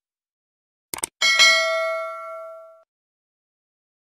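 End-screen subscribe sound effects: a quick double mouse-click about a second in, followed by a bright bell-like notification ding that rings and fades over about a second and a half.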